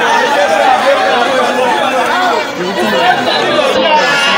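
Crowd chatter: many people talking and calling out at once, their voices overlapping into a loud, steady babble.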